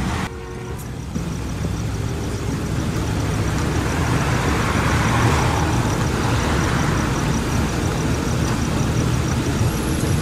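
Street traffic: passing cars' engines and tyres make a steady road noise that swells to a peak about halfway through as a vehicle goes by.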